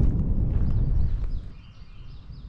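Wind buffeting the camera microphone and footsteps crunching on gravel, a rough low rumble that drops away about a second and a half in. Faint bird chirps sound above it.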